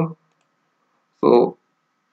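A man's voice saying a single short word, with the track gated to near silence around it.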